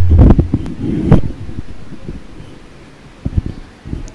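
Microphone handling noise: a few loud knocks and a low rumble at the start that die away, then some quieter rustling and a couple more knocks near the end.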